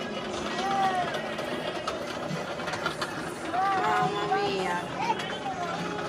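Background chatter: several people talking at a distance, too faint to make out the words, over a steady outdoor background.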